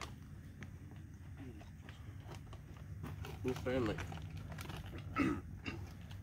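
Short, indistinct bursts of voice about three and a half and five seconds in, over a low steady rumble.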